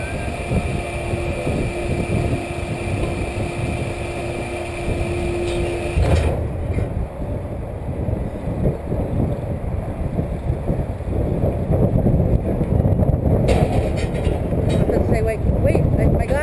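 Steady low rumble with a faint hum from the slingshot ride's machinery while the capsule sits waiting to launch; the hum cuts off suddenly about six seconds in, leaving the rumble.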